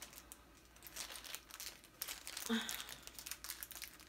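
Small plastic bags crinkling as they are handled, a run of light, irregular rustles and clicks.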